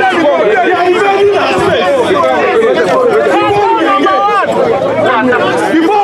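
A dense crowd of many voices talking over one another, loud and steady throughout.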